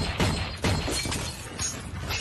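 Film action sound effects of gunfire with glass shattering: three sharp loud cracks in the first second, each trailed by breaking glass, then lighter hits.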